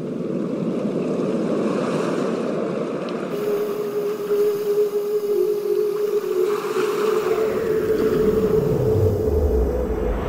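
Ambient electronic soundscape: a rushing, surf-like wash of noise, joined about three seconds in by a steady held tone. Near the end a falling sweep glides down into a deep rumble.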